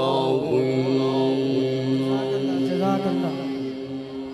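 A man's voice chanting the close of a Quran recitation: a long note held on one steady pitch, with short wavering runs, fading near the end.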